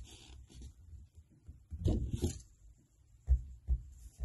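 Small handling sounds of fingers working a metal pin through a cork bead and bending the wire, with a rustle about two seconds in and two low thumps near the end.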